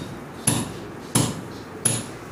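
Regular sharp knocks, about one every 0.7 seconds, with three strikes in two seconds, each dying away quickly.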